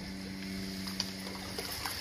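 A steady low hum with overtones, ending shortly before speech resumes, over faint water swishing as a pool vacuum head and hose are scooped through shallow water to fill the hose and push the air out of it.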